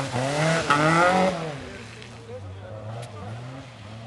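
Fiat Seicento rally car accelerating hard past at close range, its engine note climbing through a gear change. It is loudest about a second in, then fades away within two seconds.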